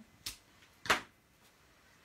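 Two short knocks on a work surface as card pieces are handled: a faint tap, then a sharp, louder knock about a second in. After that, quiet room tone.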